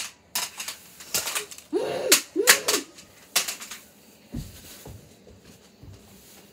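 Toy foam-dart blasters firing in quick, irregular sharp snaps through the first half, with two short pitched sounds about two seconds in. The snaps stop and a few low thumps follow near the end.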